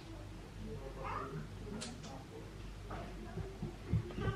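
A pet animal giving a few faint, short, meow-like cries, one rising about a second in and another near three seconds, with a brief click between them.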